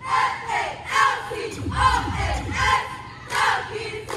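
Cheerleading squad yelling a cheer in unison, short shouted words about twice a second, in a large gym, with a low thump about two seconds in.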